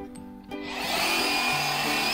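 Handheld cordless high-pressure washer switched on about half a second in, its motor and water jet running steadily with a faint high whine as it sprays the foamed car body.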